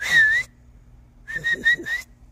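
A person whistling to call horses: one long whistle that dips slightly and rises again, then about a second later four short whistles in quick succession, the last one rising.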